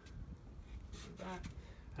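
Faint low rumble with a brief murmured man's voice a little over a second in.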